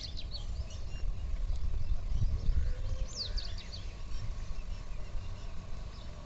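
A bird singing short phrases of quick, high, descending chirps, one near the start and another about three seconds in, over a steady low rumble.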